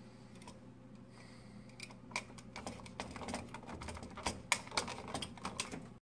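Irregular small plastic clicks and taps from hands handling a smoke detector's plastic base and its wiring, growing busier from about two seconds in, over a faint steady hum.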